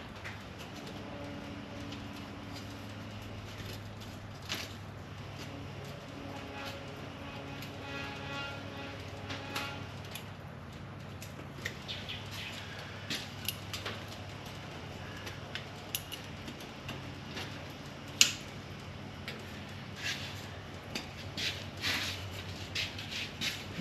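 Light clicks and taps from an old Pontiac grille shell being handled by hand on a blanket-covered bench. They come more often in the second half, with one sharper click about 18 seconds in, over a steady low hum.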